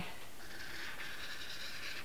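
Marker pen drawing a long stroke across paper: a steady, faint scratchy hiss that starts about half a second in.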